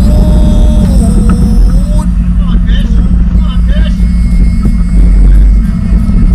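A steady low engine rumble, the loudest sound, with a faint voice under it.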